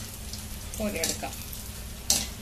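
Luqaimat dough balls deep-frying in hot oil in a wok, a steady sizzle, as a wire skimmer moves them through the oil.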